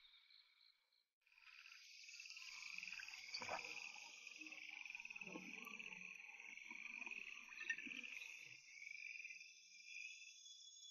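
Faint, steady chorus of night insects such as crickets, chirping in a fine, fast pulse. It comes in about a second in and continues, with faint low rustles beneath it for a few seconds in the middle.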